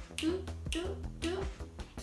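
A woman's voice in short, quiet fragments between phrases, with a few sharp clicks over a steady low hum.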